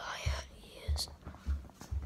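A child whispering close to a phone's microphone in the first half second, with low thuds from the phone being handled about every half second and a sharp click about a second in.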